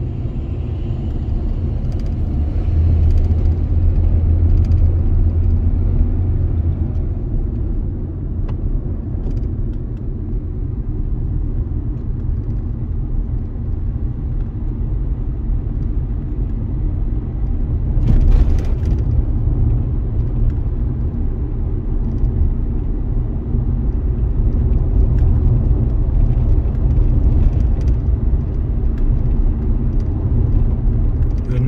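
Steady low rumble of a Dacia car's engine and tyres heard from inside the cabin while driving on the road, with the engine louder for a few seconds shortly after the start as the car pulls away and gathers speed. A brief louder rush of noise comes about eighteen seconds in.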